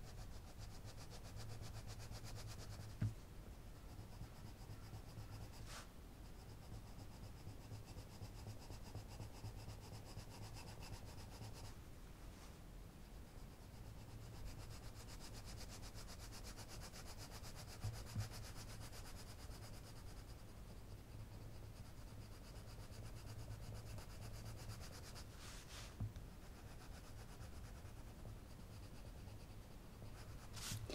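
Arteza coloured pencil rubbing faintly on paper, laying down a layer of colour across a background. A few short clicks are scattered through it.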